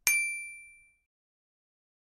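A single bright bell-like ding, struck once and ringing out with a fading decay of about a second.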